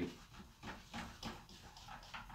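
A handheld whiteboard eraser wiping a whiteboard: a run of faint, quick rubbing strokes, a little under three a second.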